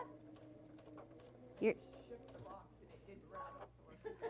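Near silence: quiet room tone with a faint steady low hum, broken once by a single short spoken word.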